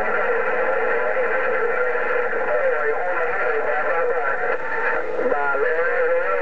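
President HR2510 radio on 27.085 MHz (CB channel 11) playing an incoming transmission through its speaker: narrow, tinny radio audio with steady tones under a garbled, unintelligible voice, and a few sliding tones about five seconds in.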